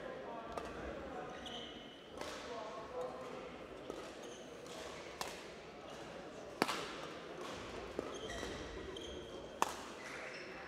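Badminton rackets striking a shuttlecock in a rally, sharp cracks every one to two seconds, with short high squeaks of court shoes. Both ring out in a large hall over a murmur of voices.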